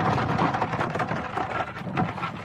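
A steady, dense crackling and rustling noise.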